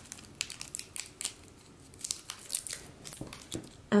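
Thin gold metallic foil sheet being peeled and handled by hand: a scatter of light, quick crackles and ticks.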